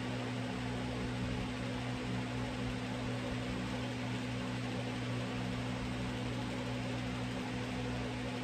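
Steady low hum with an even hiss, unchanging throughout, like a running fan or appliance motor.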